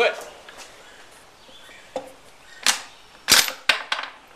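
Bolt of a Spanish Mauser 1893 rifle being worked after a shot: a few sharp metallic clicks and clacks, bunched in the last second and a half, as the bolt is opened and drawn back and the spent case ejects, with a brief high ring after the loudest clack.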